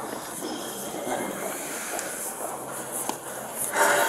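Gloved hands patting down a person's clothing, with fabric rustling and brushing against the body-worn camera, louder near the end. Faint voices in the background.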